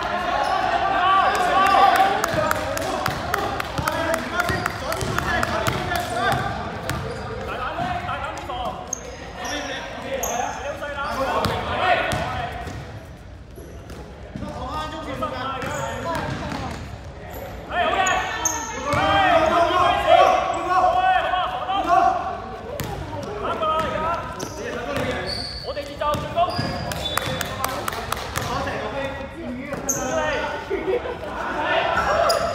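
Basketball game in a large, echoing sports hall: the ball bouncing on the court and sneakers squeaking, with players' and bench voices calling out across the floor.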